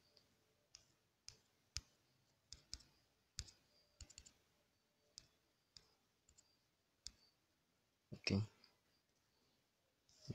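About fifteen faint, irregularly spaced clicks from fingertip taps on a phone touchscreen, pressing the arrow buttons one tap at a time.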